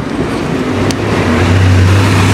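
Engine of a small tourist road train close by: a low, steady engine note that comes in about half a second in and grows louder as it approaches.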